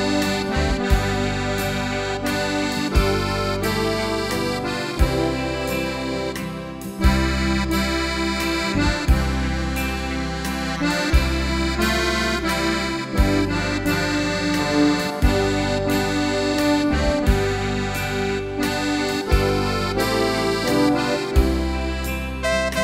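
Sampled Zupan maple accordion played on a Korg Pa4X keyboard: sustained accordion chords and melody over bass notes that change about every two seconds, each change marked by a sharp accent.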